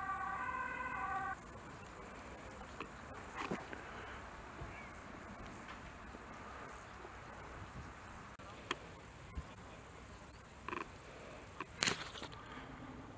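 Insects in tall summer grass chirring in a steady, high-pitched buzz. It grows louder about eight seconds in. A steady pitched hum carries on from before and stops about a second in, and there are a few faint knocks.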